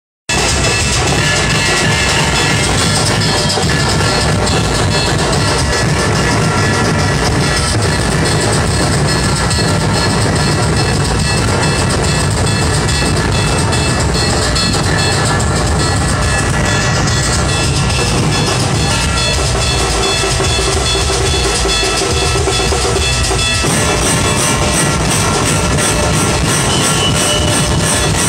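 Loud, steady procession music with heavy drumming. The music changes about 23 seconds in.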